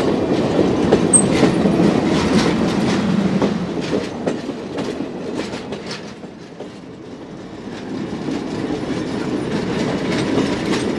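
Passenger coaches rolling past close by, their steel wheels rumbling and clicking over the rail joints. The sound falls away about six seconds in and then builds again as more cars pass.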